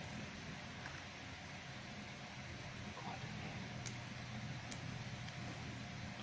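Steady low hum and hiss of background room noise, with two faint clicks about four and five seconds in as a small plastic toy figure is handled.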